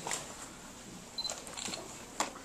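Quiet room tone in a hall, with a few faint, short clicks and a brief high tone about a second in.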